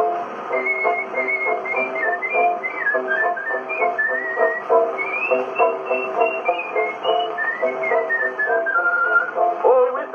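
A man whistling a melody over instrumental accompaniment, played back from a 1918 Edison Diamond Disc on an acoustic disc phonograph, with a faint surface hiss. The whistling stops near the end.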